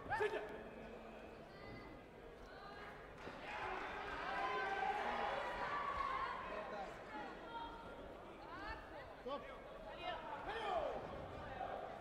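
Indistinct, overlapping voices echoing in a large sports hall, loudest in the middle, with a few dull thuds from the taekwondo sparring on the foam mat.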